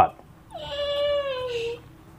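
A single high, drawn-out animal call lasting just over a second, falling slowly in pitch.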